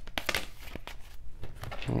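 Tarot cards being shuffled and handled by hand: a run of quick, papery clicks and rustles from the card stock.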